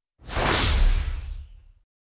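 A news-broadcast transition whoosh sound effect with a deep low rumble under it, swelling in a moment after silence and fading out within about a second and a half.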